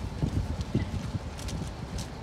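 Irregular low thuds and knocks of boxes being shifted and set down on an army truck's cargo bed, with boots moving on the bed.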